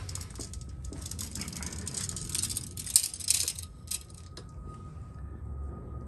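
Rustling and light rattling handling noise as a hand-held metal ruler and the camera are carried, dense for about three and a half seconds, then a couple of clicks and quieter room tone with a faint steady high hum.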